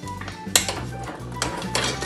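Stainless steel pressure cooker lid being twisted open against the pot: a sharp metal clank about half a second in, then more scraping clinks, over background music.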